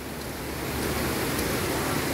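Steady rushing of a waterfall, growing a little louder over the first second.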